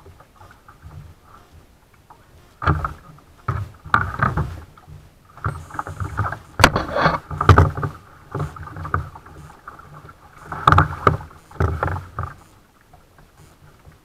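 Kayak being paddled: irregular bunches of paddle strokes splashing in the water, with sharp knocks against the hull, between about three and twelve seconds in. It is quieter before and after.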